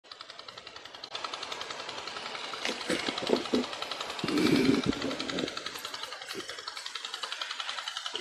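A fast, even rattle of many sharp pops or beats that grows gradually louder, with faint voices mixed in.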